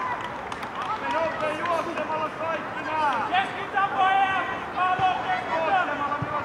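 High voices shouting and calling out across a football pitch, several overlapping, from the young players in a match.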